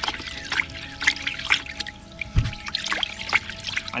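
Liquid sloshing and splashing in a plastic basin as a pesticide and fungicide mix is stirred with a wooden stick, with a dull knock about halfway through.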